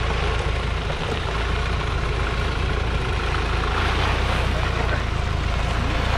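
Mahindra Thar CRDe's diesel engine idling steadily while the vehicle stands still.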